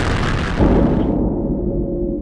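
Atlas V rocket launch roar, a deep rumble with hiss, plus a deeper surge about half a second in. The hiss dies away after about a second as steady ambient music tones fade in.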